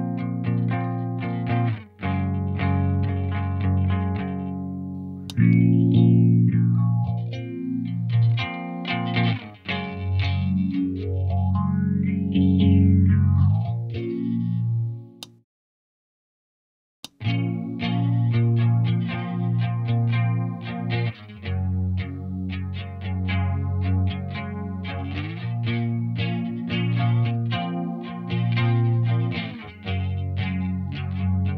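Electric guitar strumming chords, first clean, then through a phaser whose sweep rises and falls through the chords. After a break of about two seconds in the middle, the chords return through an Electro-Harmonix Small Clone chorus pedal.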